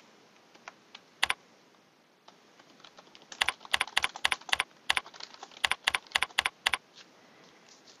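Computer keyboard typing: a single click about a second in, then two quick runs of keystrokes, each about a second long, in the middle.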